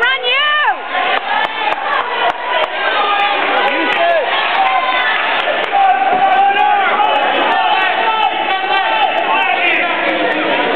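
Spectators shouting and cheering in a gym, many raised voices overlapping throughout.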